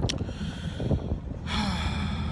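Ferry engines running with a steady low hum, plus a breath close to the microphone about one and a half seconds in.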